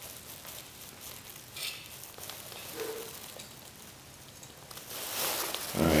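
Faint scattered clicks and handling noises as homemade alcohol stoves are lit by hand, then a soft rising rush of noise near the end as one of them catches.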